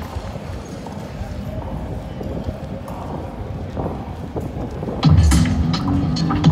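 Open-air festival ground with distant crowd chatter, then about five seconds in, loud music suddenly starts from the stage sound system, with heavy bass notes and cymbal hits.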